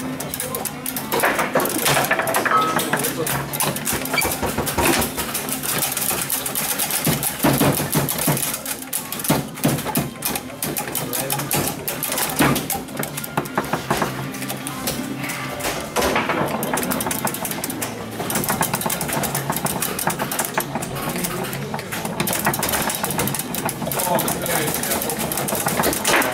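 Competitive foosball play: the ball cracking off the plastic figures and the table walls, with rods clattering in a rapid, irregular run of clicks and knocks, over voices chattering in the room.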